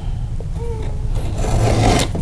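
Utility knife blade drawn along the edge of an aluminium speed square, scoring the paper face of a drywall piece: a scratchy scrape in the second half, over a steady low hum.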